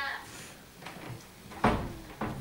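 A woman's spoken line trails off at the start, then after a short lull comes a single sharp knock, about a second and a half in.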